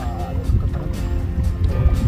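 Wind gusting on the microphone in a small wooden boat out on open water, a low uneven rumble, with faint background music under it.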